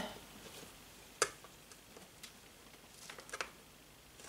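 Mostly quiet, with one sharp click about a second in, a smaller click a second later, and a few faint ticks near the end.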